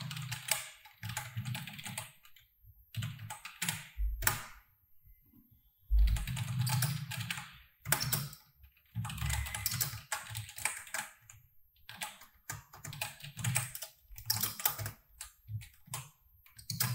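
Typing on a computer keyboard: bursts of rapid keystrokes separated by short pauses, with a few heavier single key strikes around four and six seconds in.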